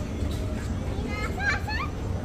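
A young child's brief high-pitched call, with a gliding pitch, a little past halfway through, over a steady low hum in the terminal.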